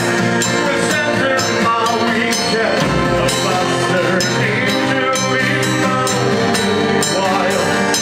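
A neofolk band playing live: a steady beat of drums and percussion under a man's voice singing into a microphone, with a deep thump about three seconds in.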